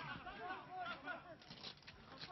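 Faint, distant voices calling out over quiet outdoor background hiss.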